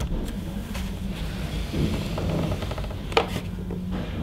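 Handling noise as a tablet is tilted in the plastic grip mounts on a speaker dock's ball-joint arm: faint rubbing over a low steady hum, with one sharp click about three seconds in.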